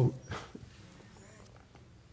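A pause in a man's sermon: the end of a spoken word, then quiet room tone.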